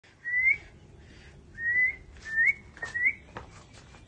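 Four short rising whistles, each under half a second, from a person whistling, with a few sharp clicks among the later ones.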